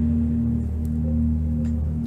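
Background ambient music: a sustained low drone with a few steady held tones and no beat.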